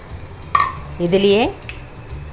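A glass bowl knocks against a black iron kadai as dried red chillies are tipped in. About a second in comes a short, squeaky, pitched scrape, over a low steady hum.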